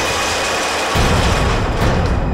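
Suspenseful background score: a rushing swell of noise, with a deep boom coming in about a second in.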